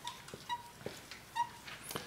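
Marker squeaking against a white writing board as letters are written: three short high squeaks, the first right at the start and the last about one and a half seconds in, with faint taps of the marker between them.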